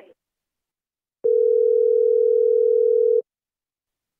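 A single steady mid-pitched telephone line tone. It starts with a click about a second in, lasts about two seconds, then cuts off.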